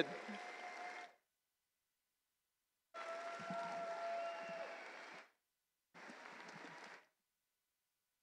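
Faint audience applause that cuts in and out three times, with dead silence between, as if gated off the sound feed.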